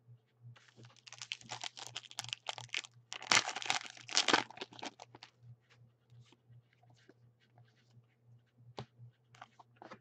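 A trading-card pack wrapper torn open and crinkled, loudest about three to four and a half seconds in, followed by light clicks and rustles of cards handled in the hands.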